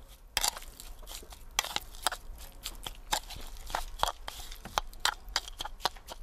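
A fork stirring and mashing crushed tinned pineapple with sugar and spice in a wooden bowl: irregular wet squelches and sharp clicks as the fork knocks against the bowl.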